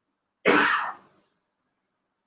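A man's single short cough, starting suddenly about half a second in and dying away within about half a second.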